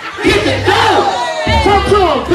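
Music with a heavy bass line playing through the hall's speakers, while a crowd shouts and sings along over it.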